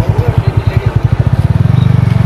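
An engine running close by with a fast, even low beat, getting louder and smoother near the end.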